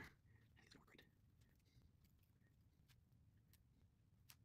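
Near silence, with a few faint soft ticks from hands fitting clear plastic tubing around a moss-wrapped root ball.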